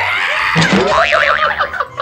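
Cartoon-style comedy sound effect edited over a reaction shot. Its pitch swoops down low and back up, then warbles rapidly up and down for about half a second.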